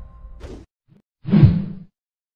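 The tail of an intro music track dying away, then a whoosh transition sound effect about a second later that swells and fades within half a second.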